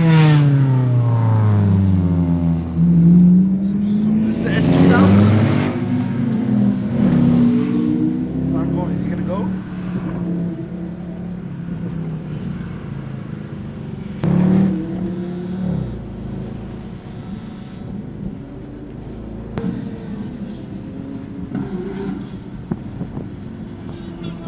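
Sports car engines revving hard, the pitch falling and then climbing again several times over the first ten seconds, with another short rev about fourteen seconds in, then settling to a steadier, quieter drone. Heard from inside the cabin of a following car.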